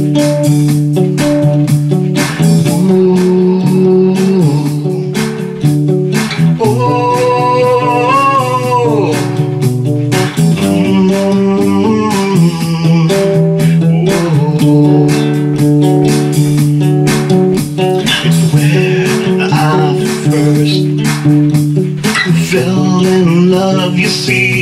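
A guitar strummed steadily through an instrumental passage between sung verses. A melodic line bends up and down over the strumming about a third of the way in and again near the end.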